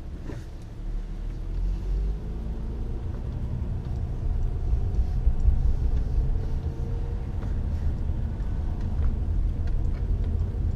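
Car engine and road rumble heard from inside the cabin as the car pulls away from a stop, the engine note rising over the first few seconds, then cruising with a steady low rumble.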